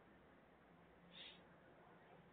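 Near silence: faint low background hum, with one short soft hiss about a second in.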